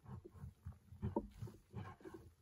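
Dry loose soil and small clods pouring down into a dirt pit and landing on the heap of earth below, in a run of soft, irregular thuds and patter, the heaviest a little over a second in.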